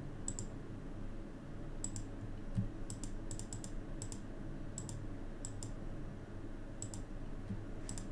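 Computer mouse clicking, each click a quick press-and-release pair, about a dozen at irregular intervals with a quick run in the middle, over a low steady hum. A soft low thud about two and a half seconds in.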